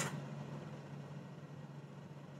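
Faint steady room tone: a low hiss with a thin, steady low hum under it.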